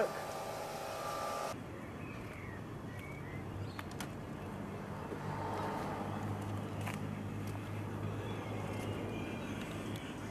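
Audi R8's 4.2 V8 on its stock exhaust, idling with a low, steady hum, with a few faint clicks.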